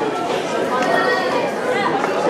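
Many people talking at once in a large hall: a steady hubbub of crowd chatter with no single voice standing out.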